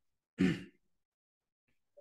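A man's short sigh, one breathy exhale about half a second in.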